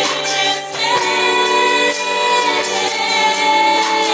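A Portuguese gospel worship song sung by several voices, with long held notes; the voices briefly thin out about a second in and then come back in.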